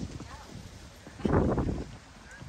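Footsteps on a wooden boardwalk, a string of short knocks underfoot, with indistinct voices of people close by, briefly louder just past the middle.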